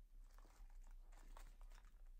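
Near silence, with faint rustling and light clicks as small packed items are handled and picked up off a bedsheet.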